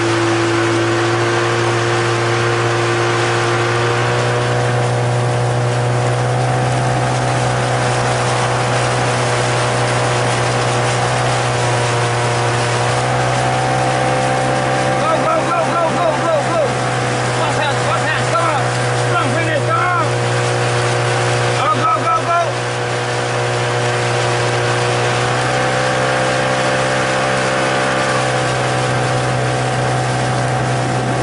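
Motorboat engine running steadily at close range, its speed shifting a few times as the boat keeps pace with a rowing shell. A voice calls out briefly several times in the middle.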